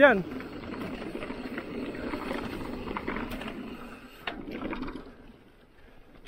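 Mountain bike tyres rolling over the slats of a wooden boardwalk, a steady rattling rumble with a click about four seconds in, fading out about five seconds in.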